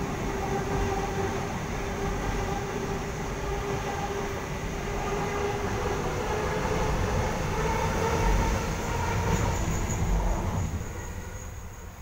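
NSW TrainLink H set (OSCar) double-deck electric train running past the platform: wheel-on-rail rumble with a steady whine. The sound dies away as the end of the train passes, about ten and a half seconds in.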